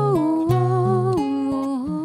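A woman sings a slow melody in long, wavering held notes that step down in pitch about a second in and again near the end, over a fingerpicked acoustic guitar.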